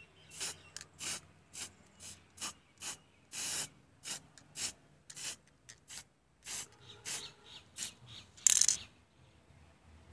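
Aerosol spray-paint can sprayed in a quick series of about twenty short hissing bursts. One burst about three and a half seconds in is longer, and the loudest comes near the end.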